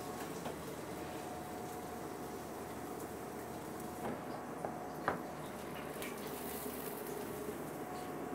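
Steady kitchen background hum with a faint steady tone. About four to five seconds in there are a few light clinks of a serving spoon against a stainless steel steam-table pan as beans are scooped out.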